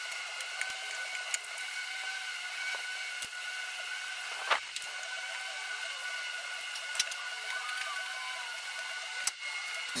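A few light clicks and taps of hands working a wiring harness and rubber grommet through a hole in the car body, over a steady high-pitched whine.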